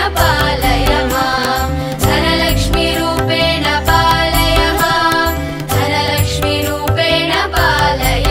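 Indian devotional music: a sung hymn in chant-like style over melodic backing, steady bass and regular percussion strokes.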